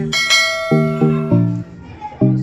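A bell chime sound effect rings once at the start and fades over about a second and a half. It plays over background music made of short, evenly spaced plucked notes.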